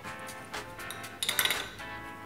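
Metal clinking for about half a second past the middle as a Steadicam docking bracket is set onto a metal C-stand head, over background music.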